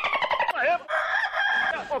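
A rooster crowing: one long crow that falls in pitch at first and ends on a held note, with a man's shout at the very end.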